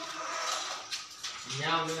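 Voices talking, with a low haze of room noise between the words.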